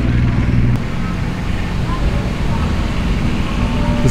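An engine idling steadily, a deep low hum whose tone shifts slightly about a second in, with faint voices in the background.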